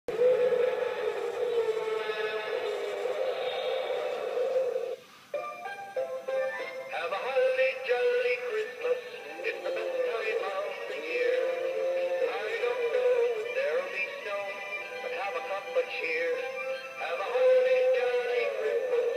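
Animated Bumble the Abominable Snowman Christmas stocking singing its built-in song: one long held note, a short break about five seconds in, then a recorded sung tune with music.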